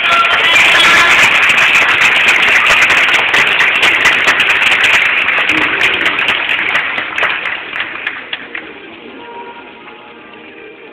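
Audience clapping, starting suddenly and loud, then dying away over about nine seconds, with background music underneath.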